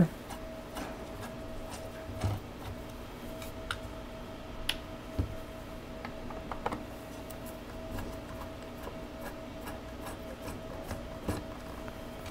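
Faint rubbing and scraping as hands and a screwdriver work on parts inside a metal electrical chassis, with a few scattered light clicks and taps. A steady low hum sits underneath.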